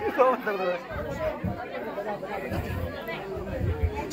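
Indistinct voices of people talking in the background, quieter than close speech.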